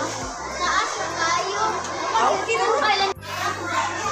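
A group of children chattering and calling out over one another. The sound breaks off abruptly about three seconds in, then the chatter resumes.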